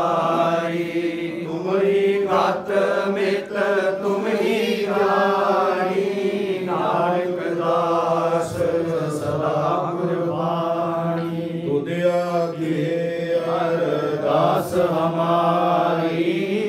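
Congregation chanting a devotional prayer together, a continuous, steady group chant with no pauses.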